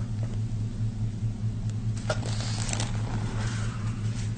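A steady low electrical hum, with a few faint clicks and rustles about halfway through as gloved hands handle an instrument at the wound.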